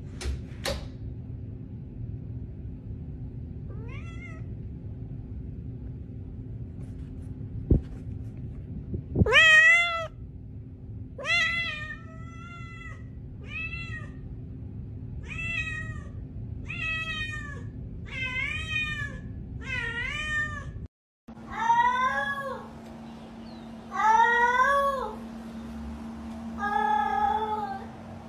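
Domestic cats meowing: one cat gives a string of about ten meows, roughly one a second, after a single sharp click; after a brief gap a second cat gives three longer, louder, lower meows.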